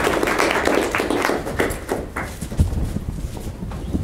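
Audience applauding, a dense patter of claps that thins out and stops about halfway through. After it come a few low thumps and knocks.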